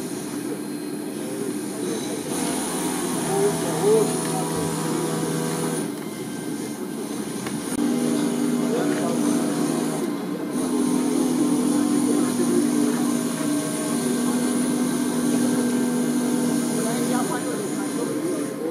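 Indistinct chatter of a group of people talking among themselves, with steady low humming tones under it that shift in pitch a few times.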